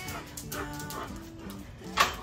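Alaskan Malamute whining and vocalizing in short calls that bend up and down in pitch, over background music.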